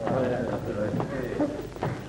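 Indistinct chatter of several women's voices overlapping, with a few faint clicks.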